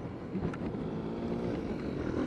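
Yamaha Mio Gear S scooter being ridden along a road: a low, steady engine hum mixed with wind and road noise.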